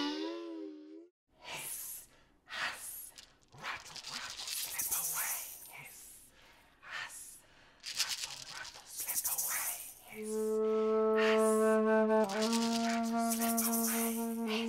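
Snake noises: bursts of hissing voices mixed with short rattles of a hand shaker, coming and going for several seconds. About ten seconds in, a low woodwind note starts and is held steadily, with one brief break.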